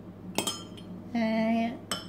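A metal spoon clinking against a ceramic mug and a glass bowl: two sharp clinks with a short ring, about half a second in and near the end. Between them comes a brief held voice sound.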